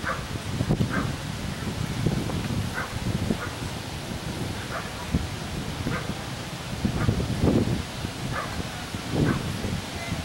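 A dog barking repeatedly: about a dozen short barks, roughly one a second at an uneven pace.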